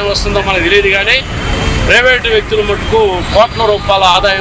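A person speaking over a steady low hum of road traffic.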